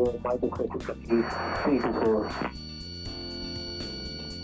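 Air-traffic radio voice chatter over background music. From about two and a half seconds in, the voices stop and the music carries on alone with sustained notes.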